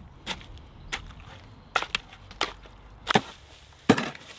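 A long-handled tool chopping down into a wet cob mix of clay, sand and water in a metal wheelbarrow: about six separate sharp strikes, irregularly spaced, the last two the loudest.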